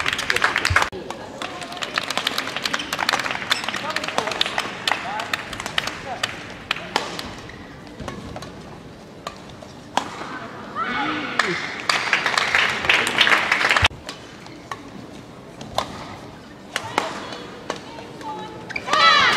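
Badminton rally on an indoor court: sharp cracks of rackets striking the shuttlecock and squeaks of players' shoes on the court floor, over the chatter of the arena crowd.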